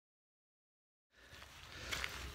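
Total silence for about the first second, then faint outdoor noise fades in and grows, with the rustle and steps of someone walking on a trail.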